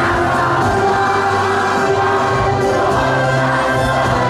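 A club anthem playing: group voices singing in choir style over backing music, holding long notes at a steady, full level.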